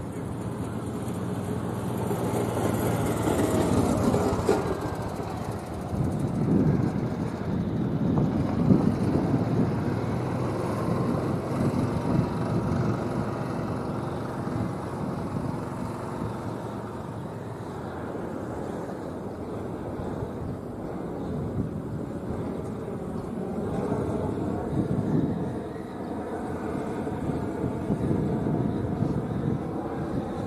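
Vehicle engine noise from outside, a continuous rumble that swells and fades, with a gliding pitch a few seconds in.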